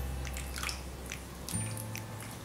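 Thick cold-process soap batter glopping and dripping from a plastic bucket into a loaf mold while a silicone spatula scrapes it out, with soft irregular splats and scrapes. Faint background music of low held bass notes sits underneath.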